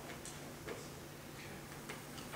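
Quiet room tone with a faint steady low hum and a few light clicks or ticks scattered through it.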